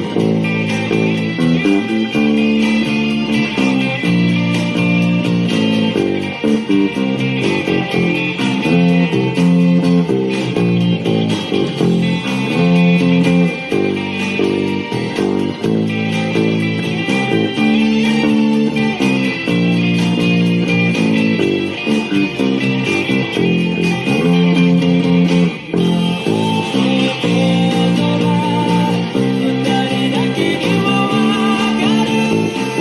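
Electric bass, a sunburst Jazz Bass-type, played along to a pop-rock band recording in which strummed electric guitars sound over the bass line. The music runs on without a break.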